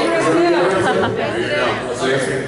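Speech: a man talking over a microphone in a large hall.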